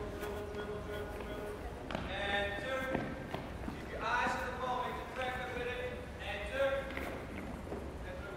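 Several children dribbling soccer balls across a gym's hardwood floor: scattered light ball taps and footsteps, with voices calling out now and then.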